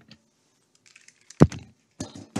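A few light clicks, then one loud, sharp thump about one and a half seconds in, in a briefing room.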